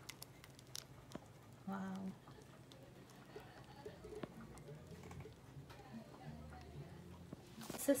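Boiled okra and its cooking liquid poured from a steel pot into a metal mesh strainer: faint trickling and the patter of slices sliding in, with a few light clicks in the first second.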